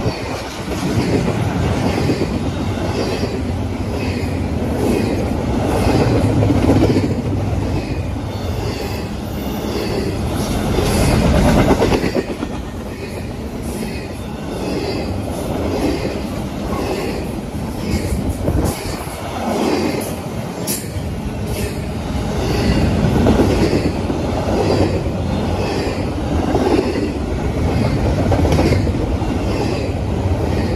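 Double-stack intermodal well cars of a freight train rolling past at close range: a steady rumble of steel wheels on rail with a repeating clickety-clack as the wheelsets pass over the rail joints.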